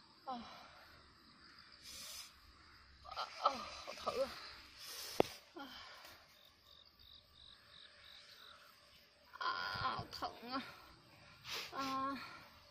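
A woman's voice, quiet, in a few short utterances with pauses between them. There is one sharp click about five seconds in.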